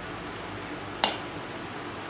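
A single sharp click about a second in, a metal spoon knocking against an enamel bowl, over quiet room tone with a faint steady hum.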